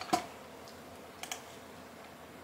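Quiet room tone with a short click just after the start and two faint clicks a little past the middle.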